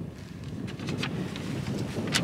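Wind blowing on the microphone: a low rumbling noise that grows louder, with a few faint clicks over it.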